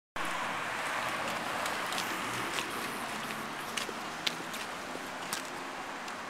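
Steady outdoor street noise, slowly fading, with a few sharp light clicks scattered through it.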